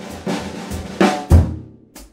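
A jazz drum kit with calfskin heads being played: a run of lighter strokes, then two loud accented hits with bass drum about a second in. The playing breaks off suddenly, leaving a short gap and one small click near the end.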